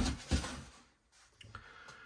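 Two soft knocks or clicks from handling the opened glass-lidded display case, then near quiet with a few faint ticks.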